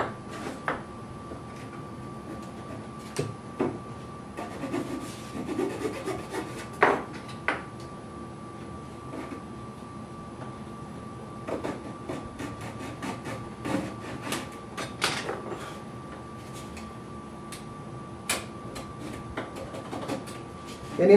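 Hand chisel paring and scraping the braces of a guitar back in short strokes: scattered scrapes and small clicks of steel on wood, with sharper ones about a third of the way in and near the end. A faint steady hum runs underneath.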